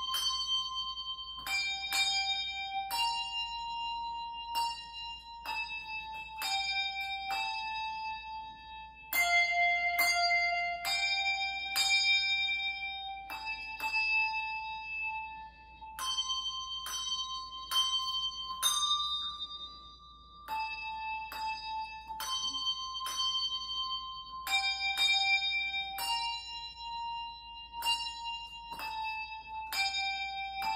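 Handbells played solo: a slow melody of struck notes, sometimes two bells rung together, each tone ringing on and overlapping the next.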